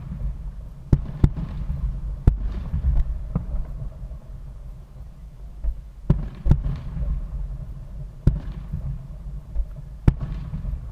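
Distant aerial firework shells bursting: about eight sharp booms, irregularly spaced a second or so apart, each trailing off in an echo, over a steady low rumble.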